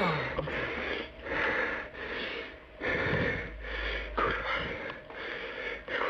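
A frightened man breathing hard and fast in panicked gasps, about one breath a second, close to hyperventilating.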